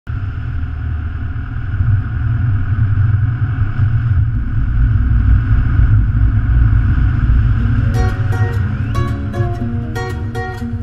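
A car driving along a road: a steady rumble of engine, tyres and wind. About eight seconds in, plucked guitar music begins as the rumble fades.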